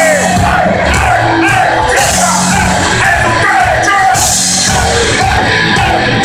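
Heavy metal band playing live: distorted guitars, bass and drums with crashing cymbals, and a singer's voice over them.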